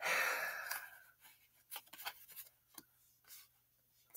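Tarot cards being slid and laid down on a cloth-covered table. A soft brushing slide lasts about a second, then comes a few faint taps and clicks of cards being handled.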